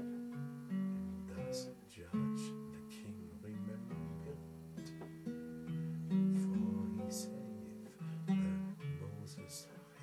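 Guitar played alone in an instrumental passage: chords struck and left to ring about every two seconds, with single picked notes between them.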